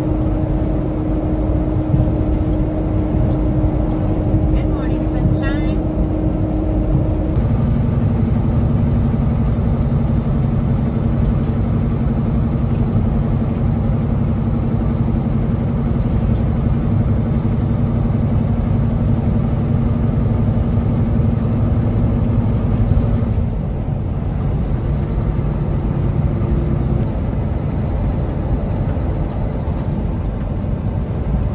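Kenworth T680 semi-truck's diesel engine and road noise heard from inside the cab at highway speed: a steady drone whose engine note steps down to a lower pitch about seven seconds in, then eases slightly near the end.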